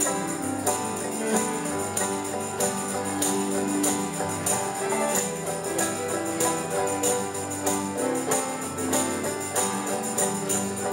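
Church praise band playing the postlude, music with a steady beat and a crisp percussion hit on each beat.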